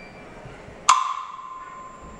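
A sparse passage from a Russian folk-instrument orchestra: one sharp, loud struck note about a second in, its single clear tone ringing on as it fades.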